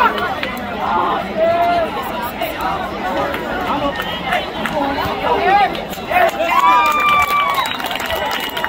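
Crowd of spectators talking and calling out in many overlapping voices, with one long, held shout near the end.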